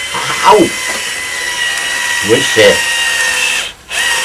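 Cordless drill driving a screw through a rubber mat into wood, its motor running with a steady whine that stops about three and a half seconds in as the first screw is driven home.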